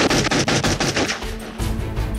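Rapid string of handgun shots, film sound effects, lasting about the first second and a half, over background music.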